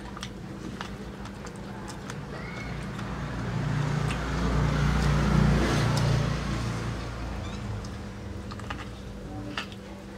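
A motor vehicle passing by: its engine and road noise swell to a peak around the middle and fade away again. Under it, small sharp clicks of someone biting and chewing corn on the cob.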